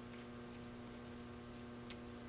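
Faint, steady electrical mains hum, with a single light click near the end.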